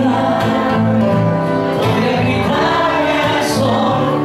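Live music: two men singing together into microphones, accompanied by acoustic guitar.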